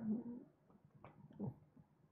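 Quiet room tone. A spoken word trails off at the start, and about one and a half seconds in there is a short, faint voiced murmur that falls in pitch.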